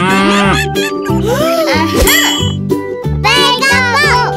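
Cartoon cow mooing sound effect over children's background music.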